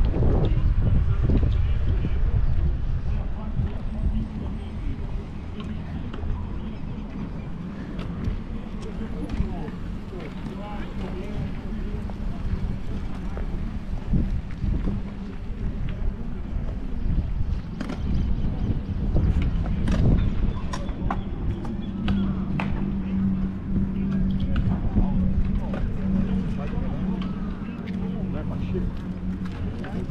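Outdoor walking ambience: a constant low rumble, people's voices, and footsteps on pavement. Sharp clacks come more often in the second half, along with a steady low hum.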